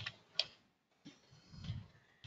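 Two sharp button clicks about half a second apart, from trying to advance a presentation slide that is not moving, then a soft low sound near the end.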